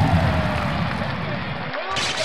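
Electronic logo-sting sound design: a deep bass hit with gliding, sliding tones over a hissy upper layer. The bass drops out briefly near the end.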